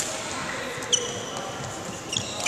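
Badminton rackets hitting shuttlecocks in a multi-shuttle feeding drill: a sharp hit at the start and a louder one about a second in. Short high squeaks of shoes on the court floor follow some of the hits.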